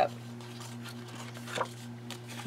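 Quiet handling of a cardstock tag and a plastic mini binder punch, with a soft tap about one and a half seconds in, over a steady low hum.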